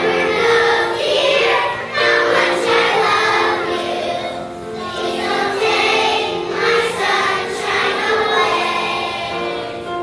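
A group of young children singing a song together as a choir.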